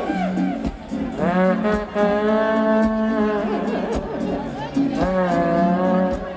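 Live band music with a trumpet improvising, its phrases bending and sliding down in pitch over a steady low sustained backing.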